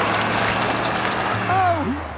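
Cartoon car sound effect: a steady low engine hum under a noisy wash as the car sits sunk in deep mud. A short vocal exclamation comes near the end.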